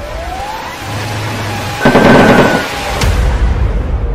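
Loud explosion about two seconds in, with a sharp crack about a second later. A rising siren-like wail comes just before it, and background music runs under it all.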